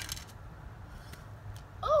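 The last clicks of a Samsung Galaxy Ace 4 smartphone and its popped-off plastic back cover clattering to rest on a concrete driveway after a side drop. Then a low steady rumble, with a surprised "Oh" near the end.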